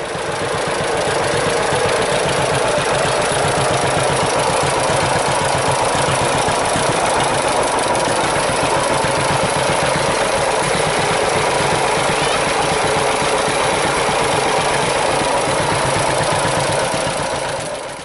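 Vintage farm tractor engines idling steadily, fading out near the end.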